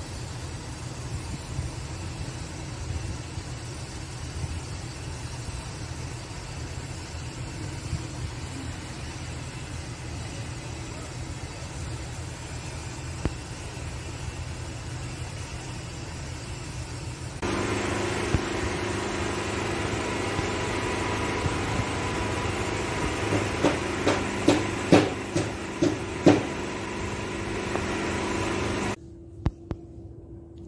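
Steady low rumble of machinery. About two-thirds of the way in it switches abruptly to a louder, steady machine hum, with several sharp knocks or clatters near the end.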